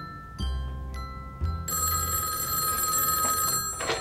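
Landline telephone bell ringing once for about two seconds, over light glockenspiel-like music. The ring ends with a short clatter as the handset is lifted.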